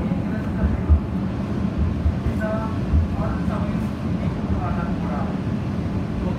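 Automated people mover train running along its guideway, heard from inside the car: a steady low rumble with occasional low thumps.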